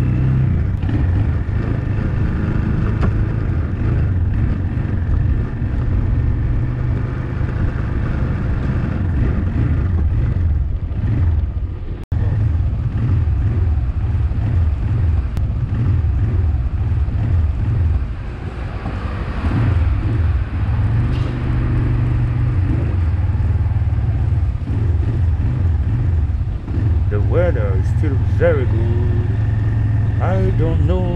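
Small motorcycle engine running at low speed as the bike rolls slowly along, steady throughout, with a momentary break about twelve seconds in.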